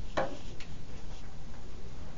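A single short, sharp tick shortly after the start, then a couple of much fainter ticks, over a steady low room hum.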